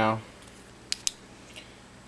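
Two sharp clicks about a second in, a fraction of a second apart: the switch of a small Garrity LED flashlight being pressed to turn it on.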